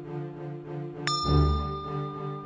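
A bright bell-like ding sound effect strikes about a second in and rings on as a steady tone, over background music with a repeating bass note.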